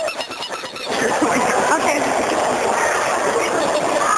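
Indistinct people's voices and background chatter, after a brief quieter moment in the first second.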